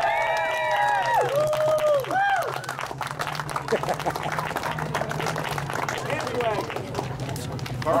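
A drawn-out voice over a loudspeaker for the first couple of seconds, then scattered clapping from a small crowd, over a steady low hum.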